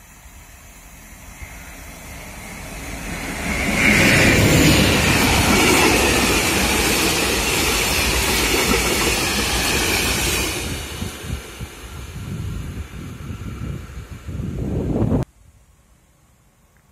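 SNCF BB 75000-class diesel locomotive passing close by with a train of tank wagons. The sound swells over about four seconds to a loud pass, then the wagons roll by with a clatter of wheels over the rail joints. It cuts off suddenly near the end.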